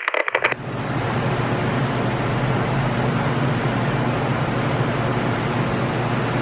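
A brief crackle of handling noise, then a steady low rumbling hum with a hiss over it, like a machine or vehicle running.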